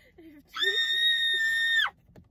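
A young woman's shrill, sustained scream on one high, steady pitch, starting about half a second in and cutting off just before the end, preceded by a few faint voice sounds.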